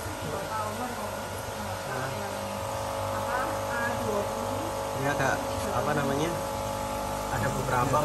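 A steady machine hum made of several fixed tones, with faint voices over it.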